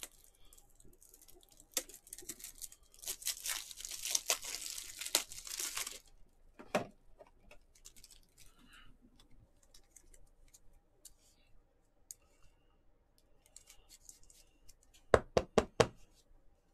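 Plastic packaging crinkling and rustling for about three seconds, then a few light handling ticks. Near the end comes a quick run of about six sharp plastic clicks as a clear plastic trading-card holder is handled.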